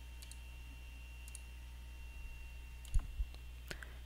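Faint steady low hum, with a sharp click about three seconds in and a couple of softer ticks just after it.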